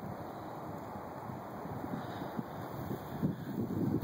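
Wind on the microphone outdoors: a steady rushing noise with irregular low buffets, growing slightly louder.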